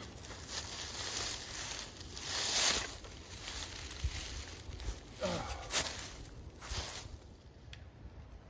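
Rustling and crunching in dry leaves and brush, in a few short rushes, as someone moves on foot through the woods.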